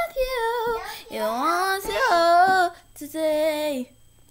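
A girl singing a gospel song, held notes and vocal runs without clear words, in three phrases; the singing stops just before the end.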